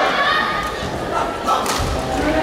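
Badminton doubles rally in a large hall: sharp cracks of rackets striking the shuttlecock, about a second in and again near the end, and heavy thuds of players' feet landing on the court floor near the end. Voices call out over the play in the first half.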